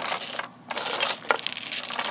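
Domino tiles clicking and clacking against one another on a tabletop as they are pushed and gathered up: a quick, irregular run of small hard clicks.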